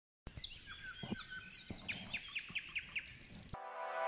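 Birds chirping: a rapid run of short, downward-sliding chirps at several pitches. Near the end it cuts off suddenly as music with steady held notes begins.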